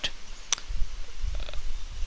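Low rumble with a single sharp click about half a second in, as a stylus is set down and writes on a tablet screen.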